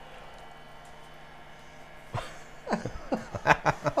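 Quiet room tone with a faint steady hum, a single click about two seconds in, then soft voices and chuckling near the end.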